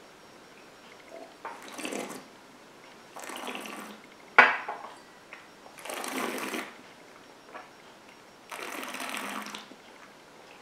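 A sip of whisky being worked around the mouth: four breathy, wet puffs of air drawn in and out over the spirit, each lasting under a second and coming about two seconds apart, with a sharp click of the lips a little after four seconds in.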